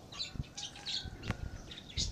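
Several short, high bird chirps, with a single sharp click a little past halfway.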